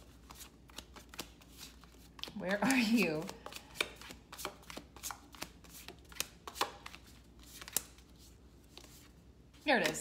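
A tarot deck being leafed through by hand, cards slid off the stack one at a time in an irregular run of light, crisp card flicks, a few a second.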